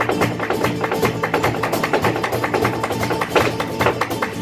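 Live flamenco music without singing: a flamenco guitar plays while hand-clapping (palmas), cajón and a dancer's rapid footwork add a dense run of sharp clicks and taps.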